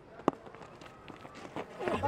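Faint cricket-ground ambience picked up by the broadcast's pitch microphones, with a single sharp knock about a quarter of a second in.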